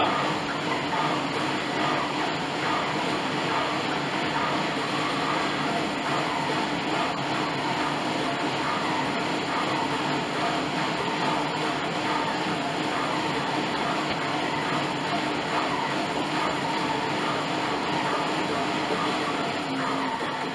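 Bowflex M7 Max Trainer's resistance fan whirring steadily under continuous warm-up pedalling, with a low steady hum underneath.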